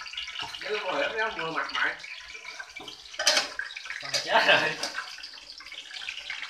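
Climbing perch dropping into a pan of hot oil and deep-frying, the oil sizzling with two loud spattering surges about three and four seconds in.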